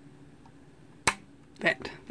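An RJ45 Ethernet plug clicking once about a second in as its latch snaps into the jack on the back of a Verifone VX 820 Duet base station.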